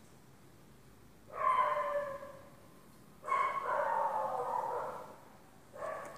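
An animal's two drawn-out, high-pitched whining calls, the first about a second long and the second about two seconds.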